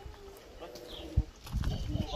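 Faint background voices talking, with a single low thud a little over a second in and low rumbling noise near the end.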